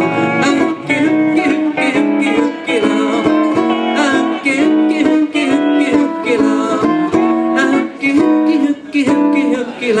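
Ukulele strumming a steady rhythm under a pedal steel guitar's gliding, sustained melody notes, a live Hawaiian tune played by a duo in a small room.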